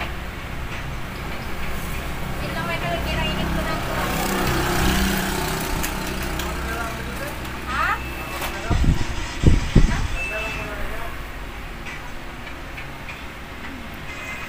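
Steady low background rumble that swells around four to five seconds in, with faint voices and a few heavy low thumps about nine to ten seconds in.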